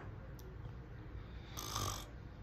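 A man snoring, with one louder snore near the end; the snoring is put on, as he is only pretending to be asleep.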